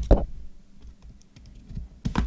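Handling noise from a cardboard trading-card hobby box and a box cutter: a couple of sharp knocks near the start, then faint scattered clicks.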